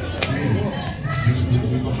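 Indistinct background voices of passers-by in a busy street, with one sharp click shortly after the start.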